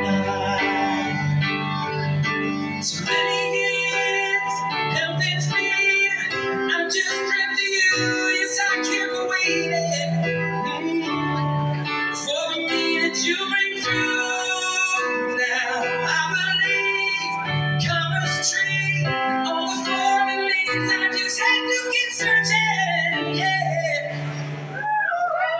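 Instrumental break played on stage keyboards, with chords and a melody line over a bass line that moves in steps.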